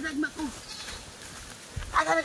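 Goat bleating: a short wavering call at the start and another beginning right at the end.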